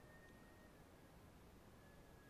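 Near silence: faint hiss with a faint thin high tone twice, each sliding slightly down in pitch.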